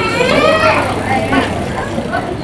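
People talking close by, a voice clearest in the first second, over a steady hum of street background noise.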